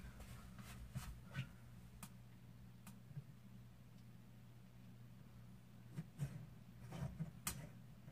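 Quiet room with a steady low hum and a scattering of faint clicks and taps as hands work at a ceiling light fitting, the taps a little louder and closer together near the end.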